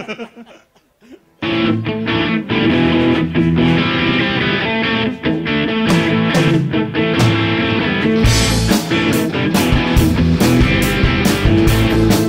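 Live rock band starting a song about a second and a half in, with electric guitars. The drums come in around six seconds in, and the full band plays with a heavy beat from about eight seconds.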